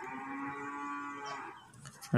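A single long, drawn-out animal call in the background, steady in pitch and fading out about a second and a half in.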